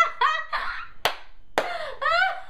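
A young woman laughing excitedly, with two sharp hand claps about a second in and half a second apart.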